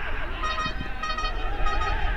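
A horn tooting in short repeated blasts, four in about two seconds, over a steady low rumble.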